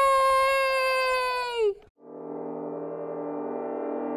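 A puppet character's long, high "Yaaay!" cheer, held steady for nearly two seconds before falling off. After a short break, a sustained synthesizer chord fades in and slowly swells, the intro of a children's worship song.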